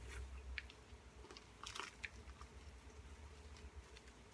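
Faint, scattered crunching and rustling of chunky potting mix and a plastic grow pot being handled by hand as a hoya cutting is settled into the pot.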